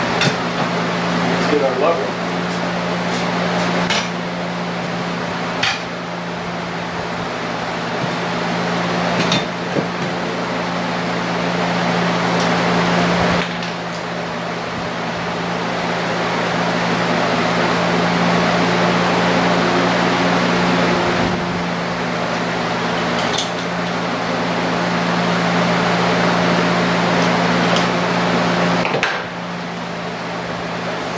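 A steady machine hum with a low drone, and scattered clinks and knocks as a metal shelf bracket and a spirit level are handled and set against a wall.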